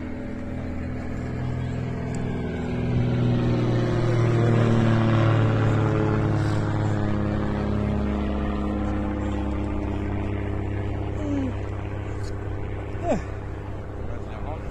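A steady engine drone, with a low rumble underneath, that swells to its loudest about four to six seconds in, then eases off.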